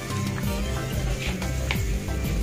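Music playing, with held notes and a steady low bass.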